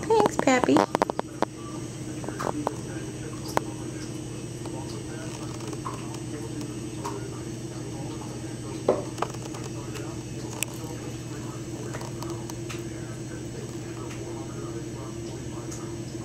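A small cat toy ball being batted by a kitten across a tile floor: a few scattered light clicks and taps over a steady low hum. A brief voice sounds in the first second.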